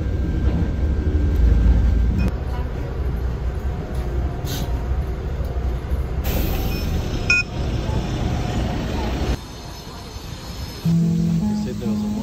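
Low, steady rumble of a moving city bus heard from inside the cabin, under background music. The rumble cuts off suddenly about nine seconds in, leaving quieter background sound, and pitched music notes come in near the end.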